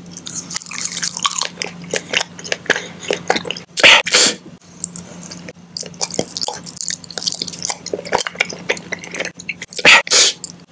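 Close-miked chewing of soft gummy candies: dense wet squishing and sticky mouth clicks, with a louder burst about four seconds in. A faint steady hum sits underneath.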